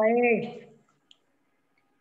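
A woman's voice over a video call, ending its last word in the first half second, then near silence with one faint click about a second in.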